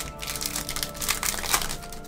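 Foil trading-card pack wrapper crinkling and crackling as it is torn open by hand, a quick run of crackles that thins out near the end.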